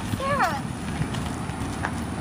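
Cruiser bicycle tyres and feet crunching on a gravel path as the rider slows and steps off the bike. Near the start, a brief high sound rises and falls in pitch.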